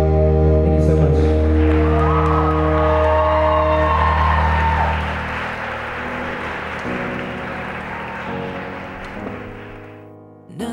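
A live band holds the final chord of a song, which stops about five seconds in. Audience applause and cheering follow and fade away.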